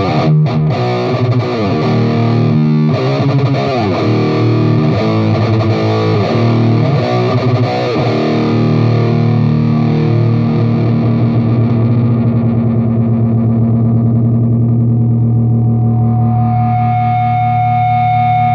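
Heavily distorted electric guitar through an EVH 5150 tube amp boosted by a Boss Metal Zone pedal: bent, wavering lead notes over the first half, then a long held chord that rings out, with a high steady tone joining near the end.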